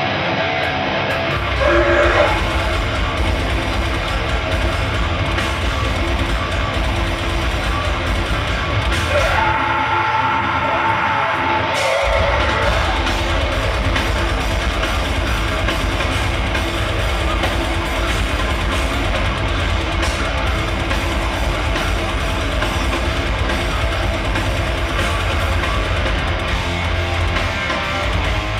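Heavy metal music with drums and distorted guitars. The low end drops out for about two seconds around ten seconds in, then the full band comes back in.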